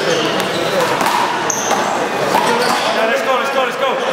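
Small rubber handball being struck by hand and rebounding off the wall and floor during a one-wall handball rally: several sharp smacks spread through the few seconds, over men's voices talking.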